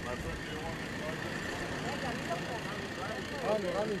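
Several people talking over one another, the voices thickening in the second half, over a steady machine hum with a thin high whine.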